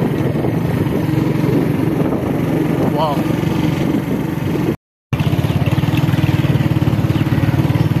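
A small motorcycle engine running steadily under way, a close, even throbbing drone heard from on the bike. It cuts out briefly a little before five seconds in, then carries on.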